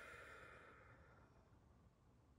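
A woman's soft sigh, a long breath out that fades away over about the first second, then near silence.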